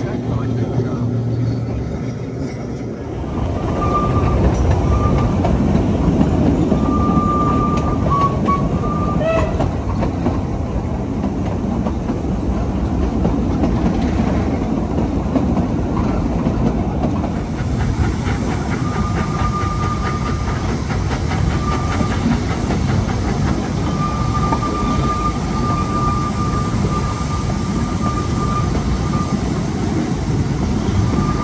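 Ride noise heard from inside a narrow-gauge steam railway carriage on the move: a steady rumble and clatter of the coach running over the track, with short high squeals coming and going. The ride noise sets in about three seconds in, after a quieter low hum.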